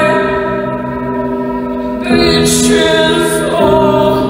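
Live music: a woman singing long held notes into a microphone, the music moving to new notes about two seconds in and again near the end.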